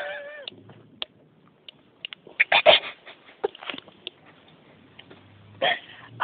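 Short, stifled vocal sounds over a telephone line: a person holding back laughter. A brief sliding voiced sound comes at the start, then a few scattered short bursts with quiet gaps between.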